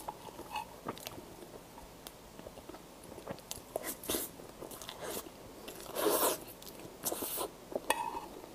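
Close-miked chewing and wet mouth sounds of someone eating soft, creamy mille-crêpe cake, with irregular clicks and smacks; the loudest bursts come about six and seven seconds in.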